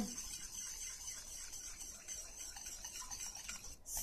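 A wire whisk stirring a thick puree of mashed banana, sweet potato and almond milk in a stainless steel pan: a faint, soft rubbing and scraping.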